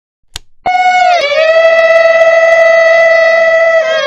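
A short click, then a high voice, a woman's, singing one long held note that bends briefly in pitch about half a second after it starts, then holds steady until it stops near the end.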